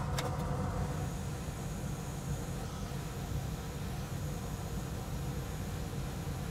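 Steady low hum and airy hiss of bench machinery running, with one faint click just after the start.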